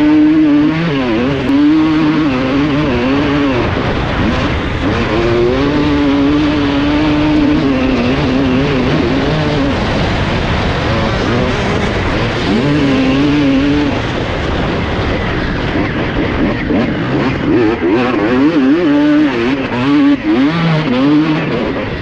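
A 2006 Honda CR250R's two-stroke single-cylinder engine runs hard on the move. The revs rise and fall over and over as the throttle is worked, with a few short stretches held steady.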